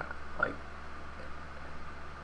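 A steady low hum under quiet room noise, with one brief spoken word.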